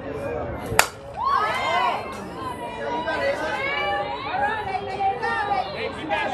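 A single sharp crack of a softball pitch meeting the bat or the catcher's glove, about a second in. Spectators' voices follow, several people calling out over one another.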